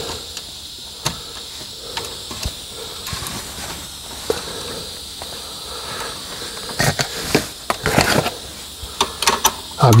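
Small metallic clicks and taps as a washer and nut are fitted by hand onto a tie rod end bolt, with a quicker run of clicks about seven to eight and a half seconds in, over a steady hiss.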